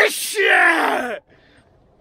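A man's drawn-out groaning yell that falls steadily in pitch, lasting about a second after a short breathy burst, and stopping just past halfway.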